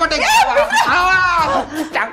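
Actors' wordless vocal sounds, snickering and chuckling, with a long wavering cry that rises and falls in the middle.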